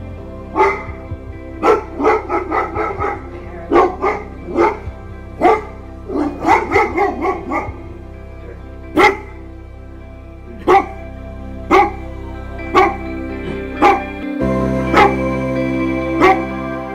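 Chesapeake Bay Retriever barking over soft background music: bursts of quick barks in the first half, then single barks spaced about a second apart.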